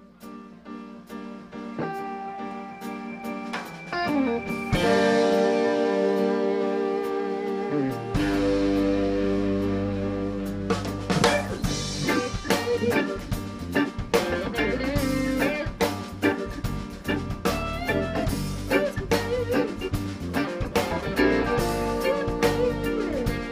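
Live band playing an instrumental song intro on electric guitar and drum kit, building up from quiet. A deep bass line comes in about eight seconds in and the drumming grows busier from there.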